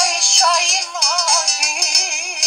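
Sevdalinka music: a heavily ornamented melody line with a strong, wavering vibrato over sustained accompaniment, with short percussive clicks marking the beat.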